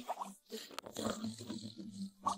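Faint, irregular cartoon animal noises.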